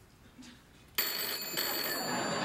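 A telephone bell rings for an incoming call. It is quiet for about a second, then the bell starts suddenly and keeps ringing.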